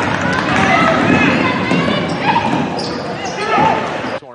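Live court sound of a basketball game in a nearly empty arena: sneakers squeaking on the hardwood, players calling out and the ball bouncing.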